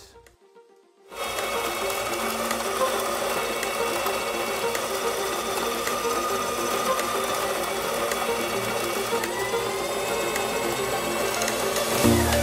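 Electric burr coffee grinder starting up about a second in and grinding whole roasted beans at a medium-fine setting, a steady motor whir with the crunch of the burrs.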